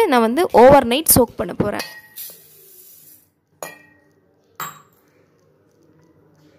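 Uncooked black rice poured from a small steel cup into a steel bowl: a brief rattle of grains, then two sharp ringing clinks of steel on steel about a second apart.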